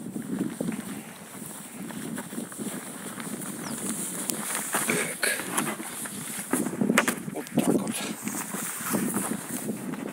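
Handling noise from an inflatable PVC kayak being handled and turned over on grass: fabric rubbing and rustling, with several soft knocks in the middle of the stretch.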